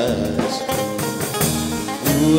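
Live Greek laiko band playing an instrumental passage between sung lines: a bouzouki plays the lead over bass guitar and drum kit.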